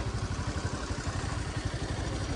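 Motorcycle engine running at low revs, a steady, rapid low pulsing.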